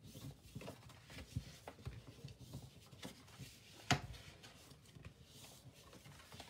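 Sheet of scored cardstock being folded along its score lines and creased by hand, with faint rustling and soft taps and one sharper click about four seconds in.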